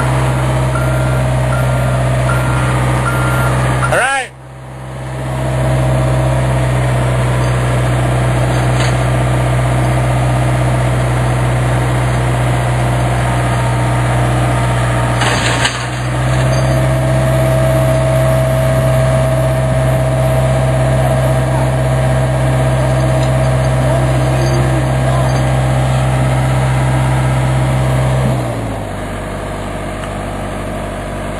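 John Deere tracked excavator's diesel engine running steadily at working revs, with a faint higher whine over it in the second half. It breaks off briefly twice, then drops to a lower, quieter idle near the end.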